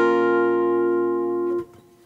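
A guitar chord rings and slowly fades, then is cut off about a second and a half in. It is an ear-training example chord to be identified as major or minor.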